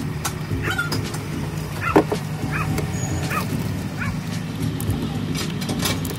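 A dog yipping and barking several times in short calls, the loudest about two seconds in, over a steady low hum and scattered clicks.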